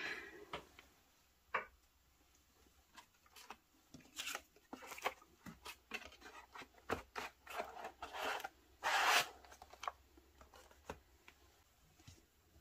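Handling sounds of a foam-lined cardboard pen box and its frosted lid on a desk mat: scattered light taps and clicks, with short scraping rustles, the longest and loudest about nine seconds in.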